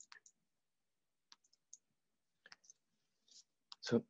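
Near silence broken by a few faint, short clicks scattered irregularly, with a slightly louder one just before the end.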